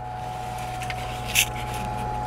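A steady low hum with a faint higher whine, and a brief scrape about one and a half seconds in.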